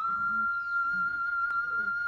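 Background music: a flute-like melody that climbs in steps and then holds one long, steady high note.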